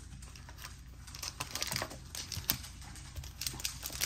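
Trading cards being handled and set down on a playmat: scattered light clicks and taps of card stock, busier about a second in and again near the end.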